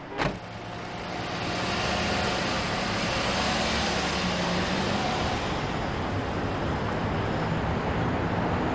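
Steady road traffic noise that builds up over the first second or two and then holds, after a single sharp knock right at the start.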